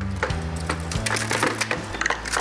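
Wooden-stick ice-cream bars being lifted out of a metal mould and handled: a run of light clicks and knocks, over background music with a steady low bass line.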